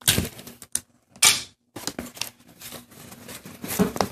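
Clear sticky tape ripped off a desk tape dispenser in two short, sharp pulls about a second apart, followed by the crinkle and rustle of paper being handled and shaped.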